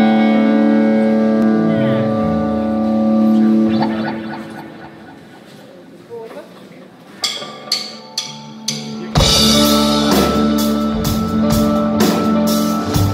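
Live rock band: a held chord rings and slowly fades, then a few separate drum hits, and the full band comes in with drums, guitar and bass about nine seconds in.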